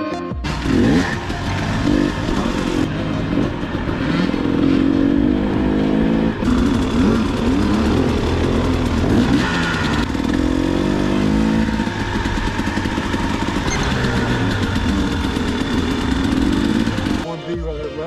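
Dirt bike engines revving, their pitch rising and falling again and again as they ride; about a second before the end, music takes over.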